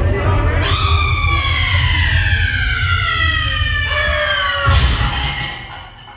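A woman's recorded scream played over the ride's speakers: one long high cry that falls slowly in pitch for about four seconds, over a steady low rumble. It ends in a sudden crash about 4.7 seconds in, then fades away.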